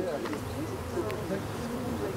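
Many honeybees flying around the hives: a dense, steady buzz made of many overlapping wingbeat hums that rise and fall in pitch as individual bees pass close by.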